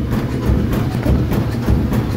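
Top-loading washing machine running with a rhythmic low thumping and clicking, about three beats a second, that sounds like beatboxing.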